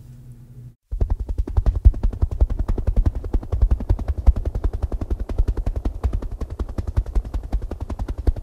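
A rapid, steady, evenly spaced train of low thuds, starting about a second in and holding its pace, like a helicopter rotor or mechanical chopping.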